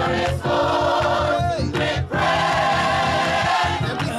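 Gospel choir singing together, with hands clapping along.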